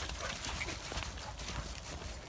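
Footsteps through long, wet grass: an irregular swishing rustle with soft footfalls.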